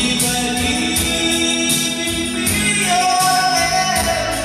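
A man singing karaoke into a microphone, his voice amplified through a loudspeaker over a recorded backing track with a steady beat, holding a long note near the end.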